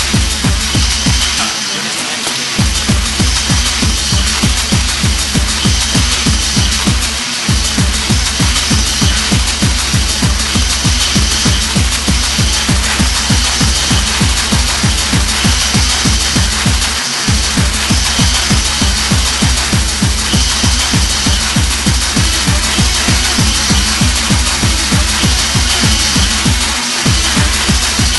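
Hardcore gabber techno with a fast, steady kick drum beat under a constant high synth layer. The kick drops out for about a second near the start and briefly twice more.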